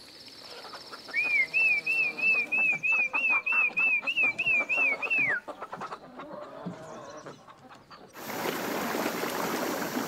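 A hen clucking in short repeated notes while a bird gives a high warbling call, about three rises and falls a second for some four seconds, ending on a falling note. An insect buzz fades out early on. From about eight seconds in, a small waterfall rushes.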